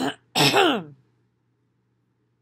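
A woman clearing her throat: a short rasp, then a louder throat-clearing with a falling pitch, over within about a second.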